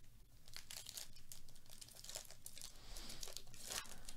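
Plastic-foil wrapper of a Bowman Chrome baseball card pack being torn open and crinkled by gloved hands: a run of faint crackles, loudest just before the end.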